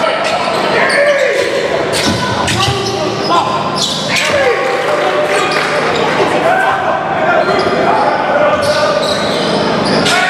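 Basketball dribbling and bouncing on a hardwood gym floor during a game, with the shouts and chatter of players and spectators echoing in the hall.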